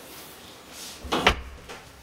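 Wood-finish interior door with a metal lever handle being handled and opened, with one sharp clunk of the latch and door a little over a second in, followed by a couple of smaller knocks.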